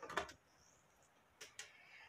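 Quiet room tone with two faint, short clicks about one and a half seconds in.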